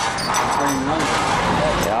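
Heavy lifting machinery on an offshore construction pontoon running with a loud, steady noise, with a voice briefly heard through it.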